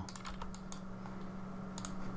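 A few light, scattered clicks from computer input, a mouse or keyboard, over a steady low electrical hum.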